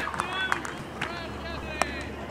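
Voices of players and onlookers calling out in short shouts, with a few sharp clicks, the loudest near the end.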